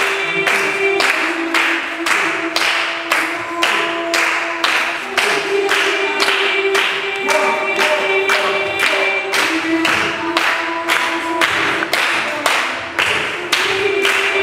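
A small group of voices singing long held notes a cappella, changing pitch every few seconds, over steady group hand clapping at about two claps a second.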